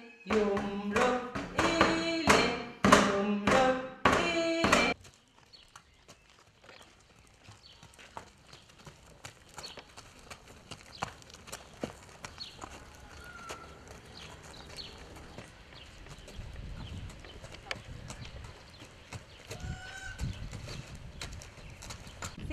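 A woman singing a short children's finger-play song, loud for about five seconds, then cut off suddenly. Faint sounds follow: a pony's hooves walking on a dirt arena with light irregular knocks and clicks, and a low rumble near the end.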